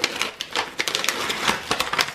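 Brown kraft paper wrapping crinkling and rustling as a parcel is pulled open by hand, full of quick sharp crackles.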